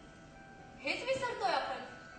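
A woman's voice through a handheld microphone: one short phrase starting about a second in, over faint steady tones of background music.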